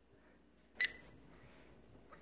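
A single short, high electronic beep a little under a second in, with a faint trailing tone just after it, over quiet room noise.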